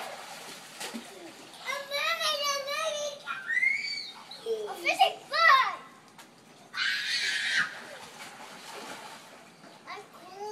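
Children's voices calling and playing in a pool, in high, sliding tones, with a splash of water lasting about a second, roughly seven seconds in.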